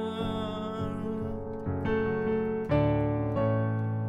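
Piano chords played on a digital keyboard's piano sound: held chords, each ringing on until the next is struck, changing about every second.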